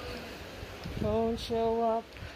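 A voice singing two held, wordless notes in the second half, steady in pitch with a short break between them.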